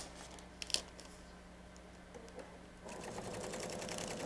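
A few light clicks of paper and fabric being handled. Then, about three seconds in, a Pfaff sewing machine starts stitching at a steady rapid pace, sewing fabric onto a paper foundation.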